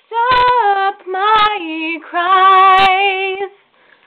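A young woman singing a ballad solo: three phrases, the last a long held note, then a short pause for breath near the end.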